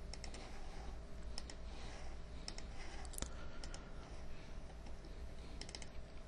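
Computer mouse clicks, in half a dozen small groups of two or three quick clicks, over a steady low hum.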